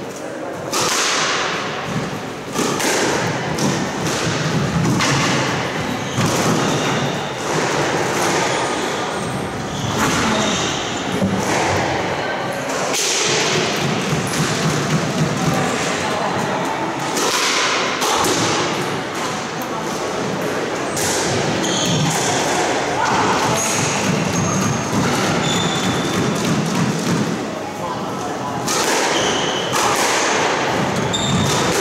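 Squash ball and racket play: the ball is struck and thuds off the court walls, with sharp hits at about one a second and each one echoing in the court.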